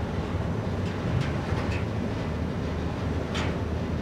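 Steady low drone of a river sand barge's diesel engine running under way.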